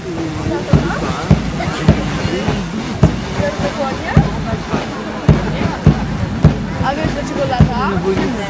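A steady beat of low, sharp thuds, nearly two a second in marching time, kept by the drill squad as it marches, over the chatter of onlookers.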